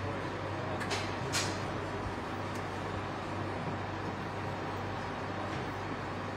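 Parked motor coach idling, a steady rumble and hum in an enclosed concrete bay, with two short sharp clicks about a second in.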